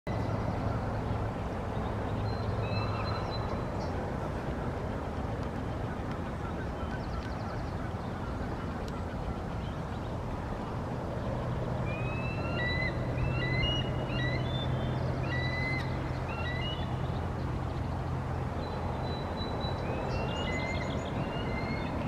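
Bald eagle giving series of high, chittering warning calls in several bursts, the longest run about halfway through, over a steady low hum. The calls are alarm at an intruding immature eagle.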